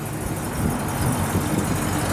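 1972 Oldsmobile Cutlass Supreme's 350 Rocket V8 with a four-barrel carburettor running steadily at low speed as the car rolls slowly away.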